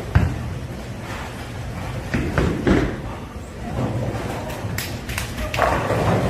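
Bowling alley: a heavy thud just after the start, a low rumble of a ball rolling down the lane, then clattering of pins being struck a couple of seconds in and again near the end.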